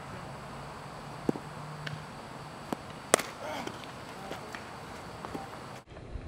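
Outdoor background noise with several sharp knocks, the loudest about three seconds in, and a few faint short chirps in between.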